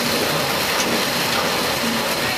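Sugarcane harvester's diesel engine running steadily at close range: a loud, even mechanical noise.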